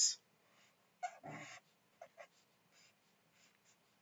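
Sharpie marker drawing lines on graph paper: a few short, scratchy strokes, with a brief breathy sound about a second in.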